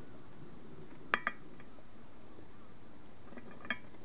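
Small metal parts clinking: a brass compression union and a flattened copper washer knocking together in the hand, a sharp ringing double clink about a second in and a few lighter ticks near the end, over a faint steady hiss.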